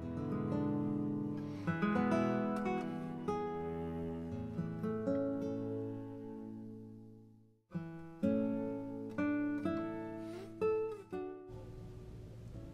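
Background music of plucked acoustic guitar, dying away to a brief gap about seven and a half seconds in, then starting again.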